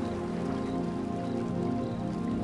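Calm fantasy ambient music: slow, sustained synth-pad chords held low and steady, with a soft patter of rain layered underneath.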